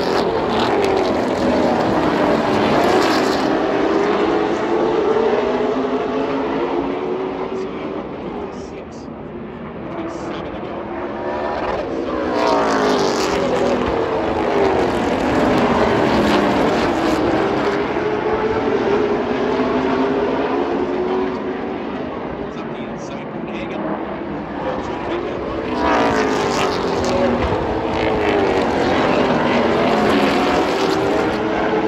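A pack of super late model stock cars racing, their V8 engines rising and falling in pitch as they pass. The sound swells three times as the field comes by on successive laps.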